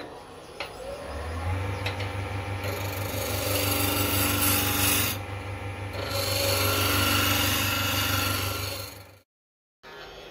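Wood lathe humming while a turning gouge cuts the spinning African blackwood blank, roughing it down to round. The rasping cut comes in two long passes with a short break between. The sound cuts off suddenly near the end.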